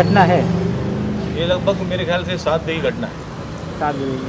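A man talking in an outdoor street interview, over a low steady hum of a vehicle engine that fades after about a second.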